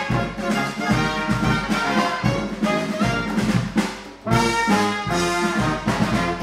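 Brass band playing instrumental funk: trombone, trumpets, saxophone and sousaphone over snare drum and cymbals. The band drops away briefly about four seconds in, then comes back in together.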